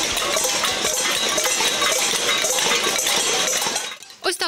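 A crowd banging spoons and lids on stainless steel cooking pots in a pot-banging protest. It makes a loud, dense metallic clatter of many overlapping strikes.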